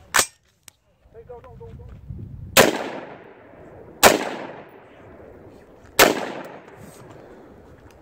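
Three shots from an AR-15-style rifle at a steady pace, about one and a half to two seconds apart, each followed by an echo that fades over a second or so. A short sharp crack just after the start cuts off abruptly.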